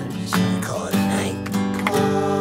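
Song backing with an acoustic guitar strumming chords, about three strums over sustained notes, between sung lines.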